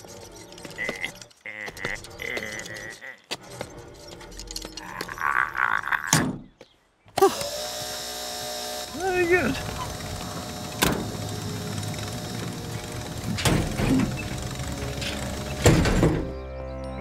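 Animated-cartoon soundtrack of music and comic sound effects, broken by a short silent gap about six seconds in. After the gap a dense steady sound runs under the music, with brief wordless vocal sounds and a few sharp knocks.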